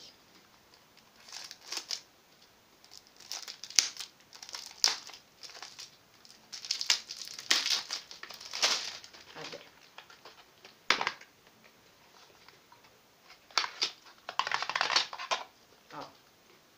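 Clear plastic wrapping crinkling and tearing as it is pulled off a cologne box, in irregular bursts with short quiet gaps between.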